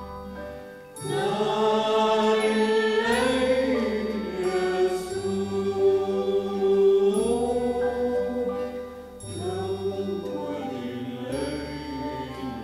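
Christmas song with choir-like singing of long, slowly gliding held notes over sustained bass notes; it swells about a second in.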